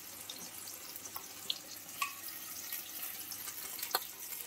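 Hot oil sizzling steadily in a kadai of fried potatoes around a freshly added ground cashew and poppy-seed paste, with a few faint pops.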